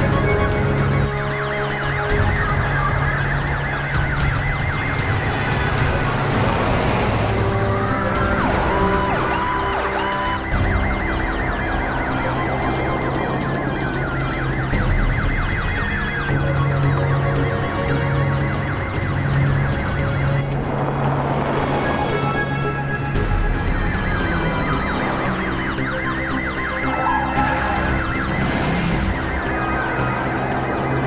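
Police car sirens wailing, each rising and falling every couple of seconds and sometimes overlapping, over background music.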